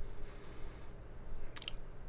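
Quiet mouth sounds of a person tasting beer, with a short lip smack about one and a half seconds in.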